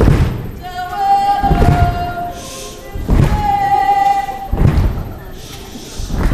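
Live song: a woman singing long held notes with ukulele accompaniment, punctuated by a loud low thump about every one and a half seconds, four times.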